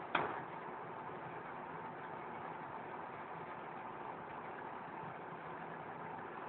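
A single sharp knock just after the start, over a steady background hiss.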